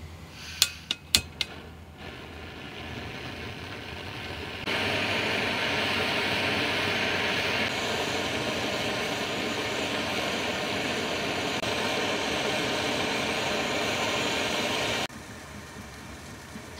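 A few sharp clicks, then a high-output gas hose burner running at full flame with a steady roar that grows, jumps louder about five seconds in, and cuts off suddenly near the end.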